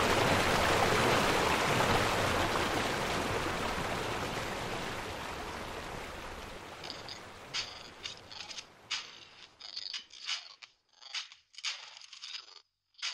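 Rushing water of a rocky mountain river, fading out steadily, followed near the end by a run of short, dry scraping clicks.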